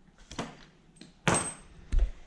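Small metal tools and fittings clinking and knocking as they are handled on a workbench: three sharp knocks, the loudest about a second in with a brief high metallic ring.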